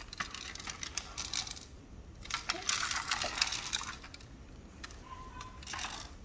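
Light, scattered plastic clicking and rattling from a small clear plastic handheld toy being handled and tilted, with a denser run of clicks around the middle.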